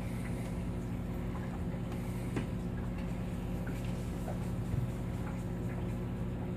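Aquarium filter equipment running with a steady low electrical hum, with a few faint ticks.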